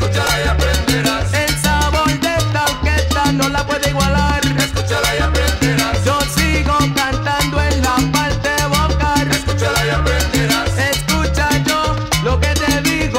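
Salsa music, an instrumental passage with no singing: a repeating bass line under busy percussion and melodic instruments.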